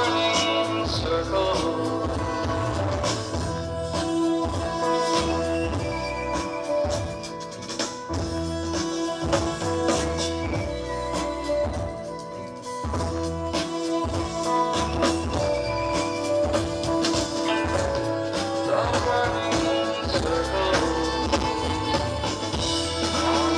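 A live band playing an instrumental passage: frequent percussion hits over a continuous bass line and held melodic notes.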